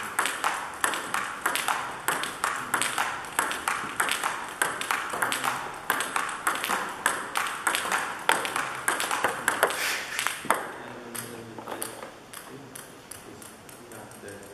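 Table tennis rally: the ping-pong ball clicking off paddles and table in a quick, steady rhythm, about three clicks a second. The rally stops about ten and a half seconds in, leaving only a few softer taps.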